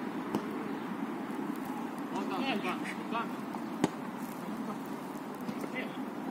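Players shouting to each other during an outdoor football game, over a steady background hum. A single sharp thud of a football being kicked comes about four seconds in.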